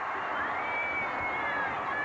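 Crowd in a wrestling arena reacting to the match's finish: a steady din of many voices, with one long high call rising and then falling above it in the middle.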